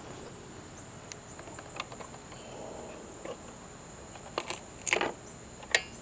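Hard plastic knocks and clunks as the battery pack comes free from the underside of a Ninebot mini self-balancing scooter and is set down, with a few sharp knocks in the second half. Behind them is a steady high buzz of insects.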